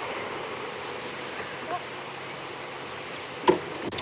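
Steady outdoor hiss of the bush ambience, with one short, sharp sound about three and a half seconds in.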